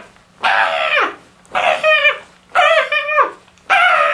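A man shrieking in panic, four loud high-pitched yelps in a row, each one falling in pitch.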